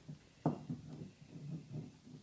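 Puppies scrambling around a plastic toddler slide: a sharp knock about half a second in, then an irregular run of soft, low bumps and thuds.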